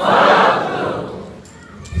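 Congregation shouting together in a brief collective response, loud at once and fading out within about a second and a half.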